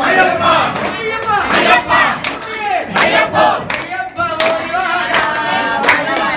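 A group of men singing an Ayyappa devotional chant together while clapping their hands in time, about one clap every three-quarters of a second.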